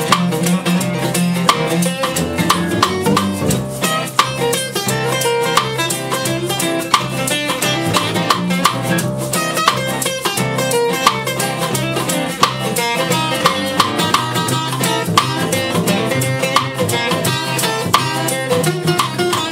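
Live acoustic band playing: two strummed acoustic guitars over an upright bass, with a snare drum keeping a steady beat.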